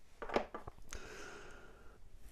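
Faint handling noise: a few light clicks and knocks in the first second as a small brass-cased blasting cap is set down on a wooden desk.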